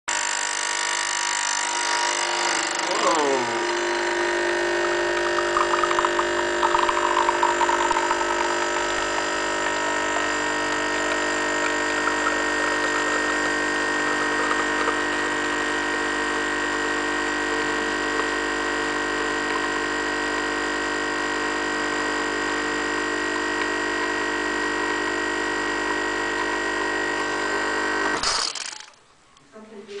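Sunbeam EM6910 espresso machine's vibratory pump humming steadily while an espresso shot pours through a single spout. The pitch dips briefly about three seconds in, and the pump cuts off suddenly near the end.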